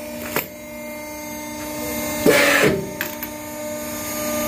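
Electric hydraulic hose crimping machine running with a steady hum as it crimps a steel fitting onto a hydraulic hose, its level slowly rising under load. A click under half a second in, a short loud hiss about two and a half seconds in, and another click shortly after.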